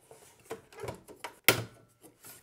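Plastic drive trays being pulled out of the bays of a QNAP NAS: soft knocks and rattles, then a sharp click about one and a half seconds in as a tray latch lets go.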